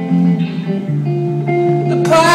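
Solo electric guitar playing a slow instrumental passage of ringing notes and chords over a low bass line, the notes changing about every half second, heard live through a concert PA.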